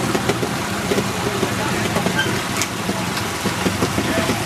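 Trials motorcycle engine running at low revs as the bike is ridden slowly over rocks, with a few short clicks.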